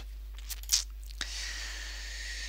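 Two quick mouse clicks in the first second, then a steady hiss lasting about a second.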